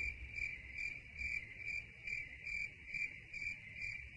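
A steady high-pitched trill that pulses about two and a half times a second, over a low steady hum.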